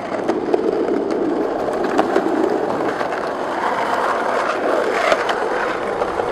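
Skateboard wheels rolling steadily down an asphalt road, a continuous rolling noise with a few sharp clicks from bumps and grit in the pavement.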